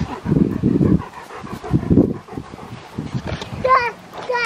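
A large white dog panting close by in uneven huffs, with a short high-pitched cry near the end.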